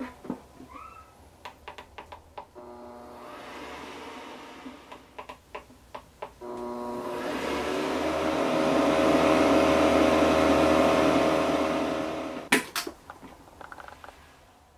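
Tefal ActiFry hot-air fryer: a few clicks as the lid is shut, then its motor starts with a steady hum about two and a half seconds in and grows louder and fuller from about six seconds as the fan and stirring paddle run. It cuts off near twelve and a half seconds, followed by clicks and knocks as the lid is opened.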